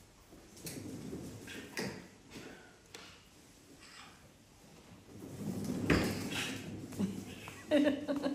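A cat exercise wheel turning under a Bengal cat's steps: a few light knocks, then a low rolling rumble that swells with a sharp knock about six seconds in.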